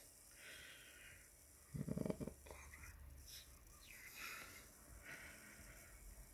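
Near silence with faint breathing close to the microphone and one brief, quiet muttered sound about two seconds in.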